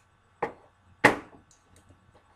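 Two sharp knocks about half a second apart: plastic wrestling action figures slammed down onto a toy wrestling ring.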